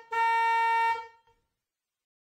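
Car horn honking: the end of a short toot, then a steady honk held for about a second.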